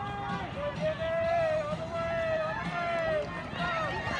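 A high-pitched voice shouting in a long, drawn-out call over crowd noise, typical of a spectator cheering on runners as they finish.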